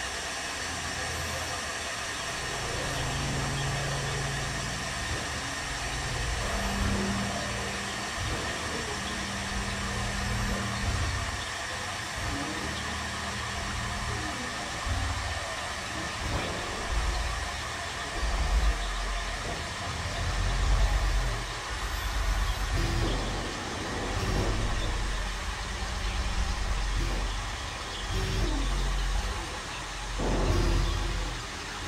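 Experimental synthesizer drone and noise: a steady hiss across the highs over low synth tones that step from note to note every second or two, swelling louder in the second half.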